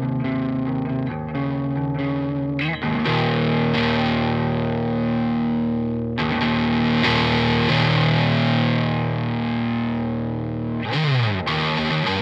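Electric guitar played through a SolidGoldFX Agent 13 fuzz pedal, giving a thick, distorted tone. Sustained chords are re-struck about three and six seconds in, and a sliding drop in pitch comes near the end.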